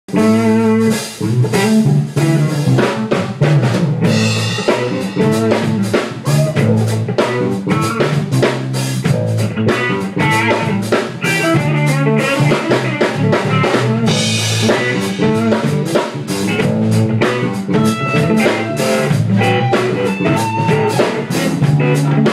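A rock-funk band jamming live: a drum kit keeping a steady groove under electric guitars, with cymbal crashes about four seconds in and again about fourteen seconds in.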